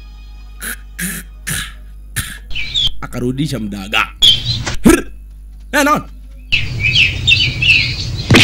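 A man's pained vocal sounds: three short gasping breaths, then strained groans that rise and fall in pitch. Birds chirp in the background near the middle and toward the end.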